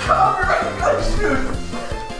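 A loud, high yelping shout of "No!" over background music with a steady beat.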